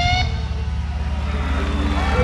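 Live heavy-rock band music: a held high note stops about a quarter second in, leaving a loud low rumble of bass and drums.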